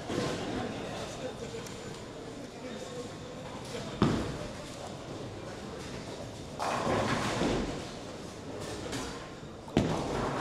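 Bowling-alley noise in a large hall: a sharp thud about four seconds in, a clattering crash of pins lasting about a second a little past halfway, and a bowling ball thudding onto the lane near the end, over background chatter.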